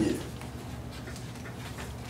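Soft, breathy chuckling at a microphone over a steady low electrical or room hum.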